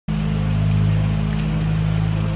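An engine running steadily in the background, a constant low hum, with the hiss of an aerosol can spraying shaving cream onto a paper plate.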